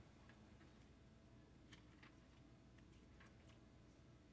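Near silence: room tone with a low hum and a handful of faint, scattered clicks.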